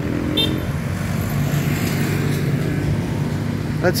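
Street traffic with a motor scooter's small engine running past close by; a low, steady engine hum that swells through the middle.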